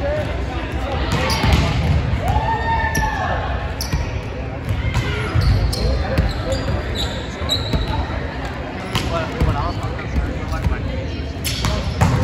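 Volleyballs being hit and bouncing on a hardwood gym floor during a spiking drill: irregular sharp smacks that echo in the large hall, with a hard spike near the end.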